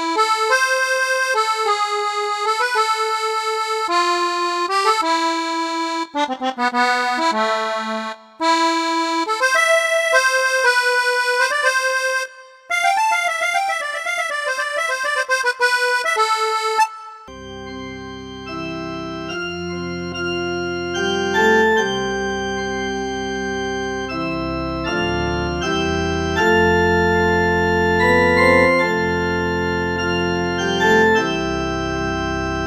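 Kurtzman K650 digital piano playing a melody on its accordion voice. About 17 seconds in it changes to a fuller voice, played with both hands in sustained chords over bass notes.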